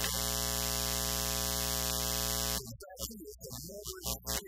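A loud, steady electronic buzz with many even overtones holds for about two and a half seconds and cuts off suddenly. A man's voice follows.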